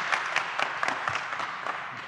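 Audience applauding, the clapping slowly dying away.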